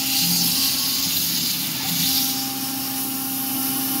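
CNC gantry mill's spindle running at 8,000 RPM while its end mill slots a groove in an aluminum plate, under a steady hiss of air-blast mist coolant, with a steady hum of several even tones beneath.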